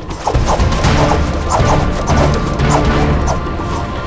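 Background music with repeated loud percussive hits.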